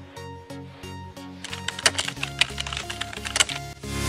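Soft music with the clicking of a computer keyboard being typed on, laid over it as a sound effect. The typing clicks come thick and grow louder in the second half.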